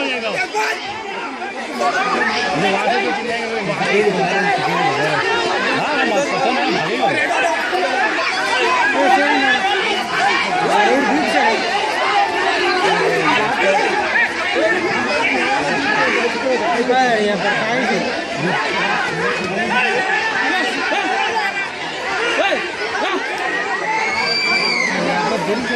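Several people talking over one another: continuous overlapping chatter.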